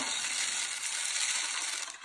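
Dry rice grains pouring off a folded paper plate into a cardboard paper-towel tube, filling a homemade rain stick. A steady hiss of falling grains that stops just before the end.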